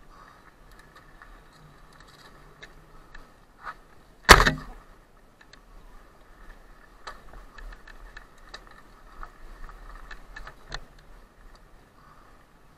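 Cube Stereo Hybrid 160 electric mountain bike riding over a dirt forest trail: faint scattered rattles and ticks from the bike, with one loud sharp knock about four seconds in as it hits a bump.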